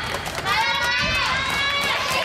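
High-pitched girls' voices shouting long, drawn-out cheering calls, each held for about a second, the first falling away about a second in; faint clicks sound underneath.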